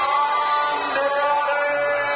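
Ring announcer drawing out the winning fighter's name in one long, held, sung-out call. The pitch dips briefly just before one second in, then holds again.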